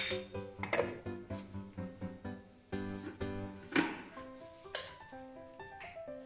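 Background music, a simple stepping melody, with a few short clicks and clinks over it.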